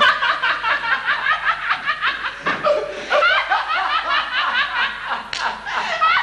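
Laughter of stage actors, high-pitched and running on in rapid short bursts, with a brief break about five seconds in.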